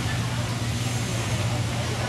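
Steady background noise of a busy outdoor walkway with a constant low hum underneath and faint voices in the background.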